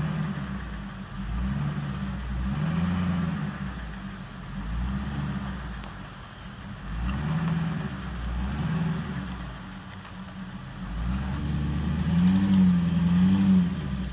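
Pickup truck engine revving up and easing off again and again as the truck pulls on a cable rigged through pulleys to a tree, working under load. The revs climb highest and hold loudest near the end.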